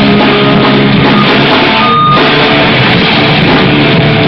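Hardcore band playing live: distorted electric guitars, bass and drum kit, dense and loud in a muddy, overloaded audience recording. The wall of sound thins briefly about halfway, then carries on.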